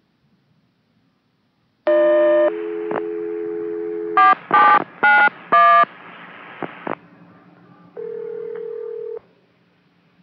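Touch-tone phone dialing over a radio-telephone channel: a short tone burst, a steady dial tone, then four quick touch-tone digits, followed by hiss and a single steady tone lasting about a second.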